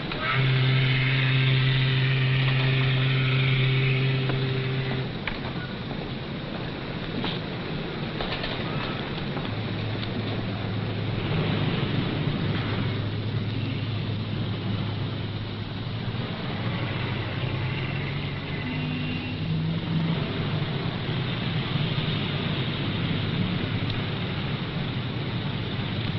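A car engine running steadily. It opens with a loud, steady low drone for about five seconds.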